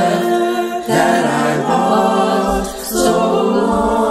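A cappella choir singing held chords in several voice parts, with short breaks between phrases about a second in and near three seconds.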